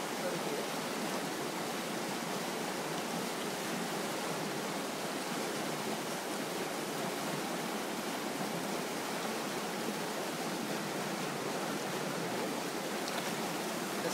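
Steady rushing of running stream water.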